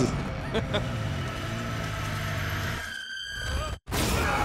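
Movie trailer soundtrack: a low droning rumble under a man's screaming, cutting off abruptly just before the end.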